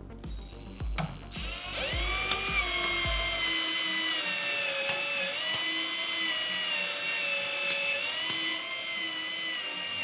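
Cordless drill spinning the drive shaft of a Rollsizer Mini case roll-sizer through a quarter-inch-to-M5 adapter. The drill starts about a second and a half in with a rising whine, then holds a steady whine with a few light clicks, and winds down at the end.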